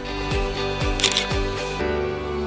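Outro background music with a steady beat, low thumps about twice a second, and a short crisp high burst about halfway through. Near the end the beat drops out and the music goes on in held notes.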